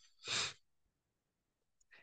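A man's single short, audible breath between phrases, lasting about a third of a second.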